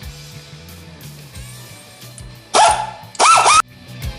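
Rock music playing low in the background; about two and a half seconds in, a dog barks twice, loudly.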